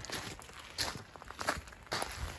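Footsteps of a person walking: a few soft, irregular steps.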